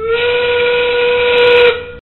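FIRST Tech Challenge field sound cue for the start of the endgame, 30 seconds left in the match: a single loud steam-whistle blast, one steady pitch that slides up slightly at the start, with hiss, cutting off a little before two seconds in.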